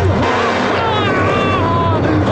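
Dramatic soundtrack: a steady low rumble under a slow, wavering high melody that steps down between held notes.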